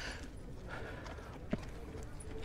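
Faint outdoor background: a steady low rumble of wind on the microphone with distant voices, and one sharp click about one and a half seconds in.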